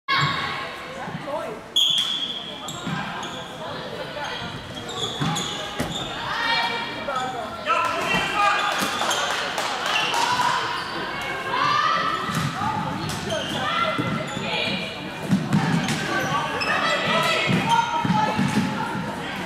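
Live floorball play in a large sports hall: sharp clacks of sticks hitting the plastic ball, shoes squeaking on the court floor, and players calling out. About two seconds in there is a short, high, steady whistle blast as the face-off is started.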